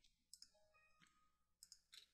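Near silence with faint computer mouse-button clicks: two quick pairs of clicks, a little over a second apart.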